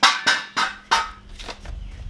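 Cardboard box and foam packing being handled: four sharp scraping squeaks about a third of a second apart, followed by a low rumble.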